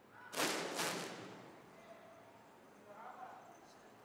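Two sharp whooshing bursts about half a second apart, a moment after the start, from a martial arts student's fast practice movements, then a fainter short sound around three seconds in.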